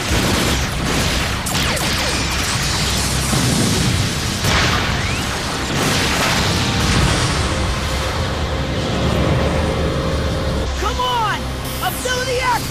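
Cartoon battle sound effects: energy blasts and explosions over a continuous loud rumble, with a few short swooping tones near the end.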